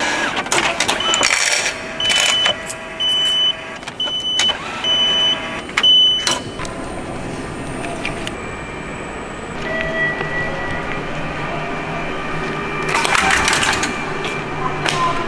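Ambience at automatic railway ticket gates: a run of short electronic beeps, roughly two a second, for a few seconds, then a steady background hum. A brief burst of noise comes near the end.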